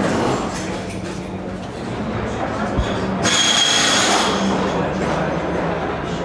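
Steady low mechanical hum with background chatter. About three seconds in comes a loud hiss with a thin high whistle in it, lasting about a second.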